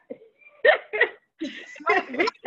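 A woman laughing in a few short, separate bursts.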